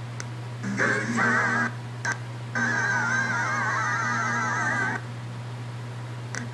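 A sitcom's sung closing theme playing through a TV speaker in broken pieces: about a second of singing, a short blip, then over two seconds more. The sound cuts out between the pieces as the over-the-air digital signal drops out. A steady low hum runs underneath.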